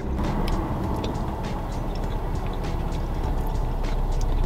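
Steady low rumble of car cabin noise, with a few faint clicks over it.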